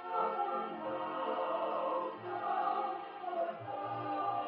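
A woman singing a slow song over musical accompaniment, with choir-like voices and long held notes.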